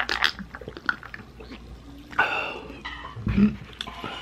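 Close-miked sips and swallows from a glass of dark soft drink, heard as a few separate throaty bursts, with small clicks from the glass and hands on the paper burger box.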